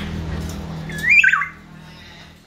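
Common hill myna giving one short, loud call about a second in, its pitch sweeping up and then down.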